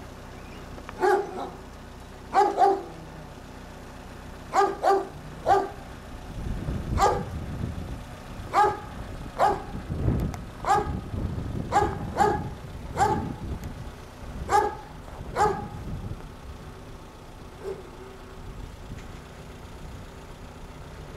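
A dog barking repeatedly: about fifteen short barks at uneven intervals, often in quick pairs, with a low rumble underneath through the middle stretch.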